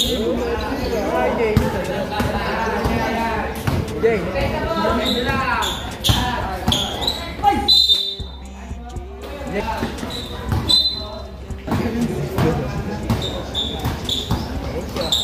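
A basketball bouncing and being dribbled on a concrete court, with repeated sharp knocks and short high squeaks, under the chatter and shouts of spectators in an echoing covered hall.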